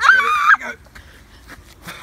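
A woman's short, shrill shriek, about half a second long, as she is hoisted up onto someone's shoulders.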